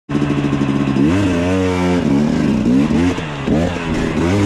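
KTM off-road motorcycle engine idling, then revved up about a second in and held briefly. Several shorter throttle blips follow as the bike pulls away on a dirt trail.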